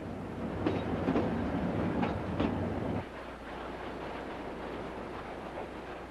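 Durango & Silverton narrow-gauge passenger train rolling along the track, with a few clicks over the steady rumble. About halfway through, the sound drops abruptly to a quieter, even rumble.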